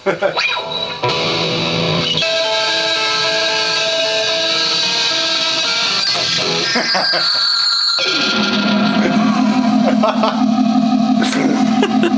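Electric guitar run through a Korg Kaoss Pad effects unit, worked from a touchscreen in the guitar body, giving layered, sustained, spacey synthetic tones. Near eight seconds the sound cuts out briefly and a lower steady drone takes over.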